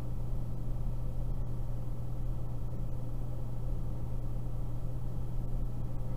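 Steady low electrical hum with a faint hiss over it, unchanging throughout.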